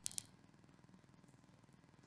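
Near silence: studio room tone, with two short faint clicks right at the start.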